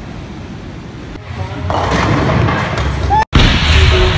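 Loud bowling-alley din that sets in about a second and a half in: a low rumble of balls rolling down the lanes under a wash of noise.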